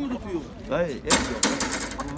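Chickens in a wire cage: a few short calls, then a loud rustling burst lasting most of a second, about a second in.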